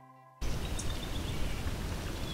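The end of a soft plucked-string music intro, cut off suddenly about half a second in by steady outdoor rushing noise with a few faint high chirps.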